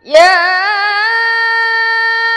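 A woman chanting the Quran in melodic tarannum style. Her voice comes in sharply just after the start and holds one long, high note, wavering in ornaments at first and then steadying.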